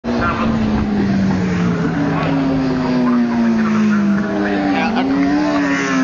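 Racing motorcycle engines running at high revs, their note sliding slowly lower, then dipping briefly and climbing again about five seconds in.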